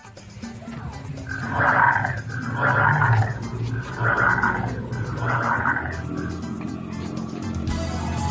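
Recorded dinosaur roars from an animatronic ankylosaurus's sound system: four roars about a second apart.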